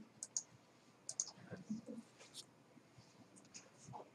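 Faint, scattered clicking of computer keyboards and mouse buttons, a few irregular clicks a second, as students work at their computers.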